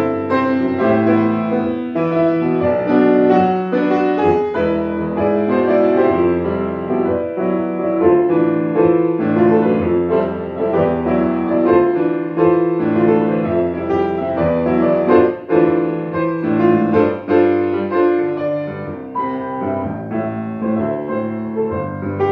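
Refurbished 1923 Steinway Model L grand piano played solo: a flowing passage of full, sustained chords under a melody.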